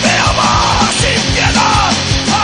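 Spanish punk rock from a cassette recording: a shouted lead vocal over fast drumming and a dense, loud band.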